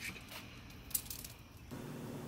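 Mostly quiet background with one short click about a second in, then a change to a different faint room tone near the end.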